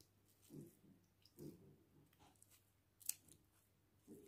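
Faint squelching and scraping of a plastic spoon pressing grated carrot through a small strainer to squeeze out the juice, with a sharp click about three seconds in.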